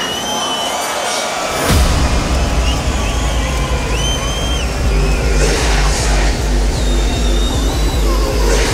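Arena crowd cheering and whistling. About two seconds in, a hardstyle track's heavy bass and steady kick beat come in and carry on under the cheering.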